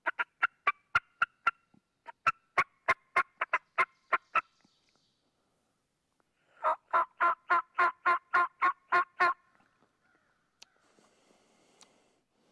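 Hen turkey yelping blown on a mouth diaphragm call: three runs of short, sharp notes at about four to five a second, the last run fuller and lower in pitch. A small click and faint rustle near the end.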